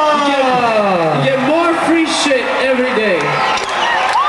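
Men's voices shouting long, drawn-out calls that slide down in pitch, over the steady noise of a concert crowd.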